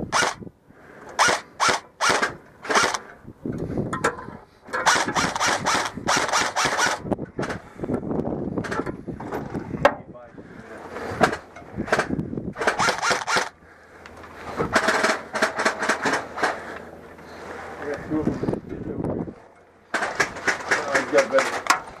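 Heavily modified KWA M4 airsoft electric gun (AEG) firing a series of full-auto bursts, each a rapid rattle of shots, some under a second and some about two seconds long.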